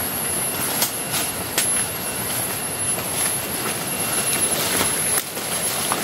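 Footsteps and the rustle of leaves and undergrowth brushing past as people push along an overgrown jungle trail, a steady rustling rush with a few sharp snaps or crunches underfoot. A thin, steady high whine runs underneath.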